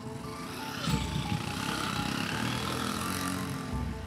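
A motor vehicle passes close by: engine and tyre noise swells about a second in and fades near the end. Soft background music with steady held notes plays underneath.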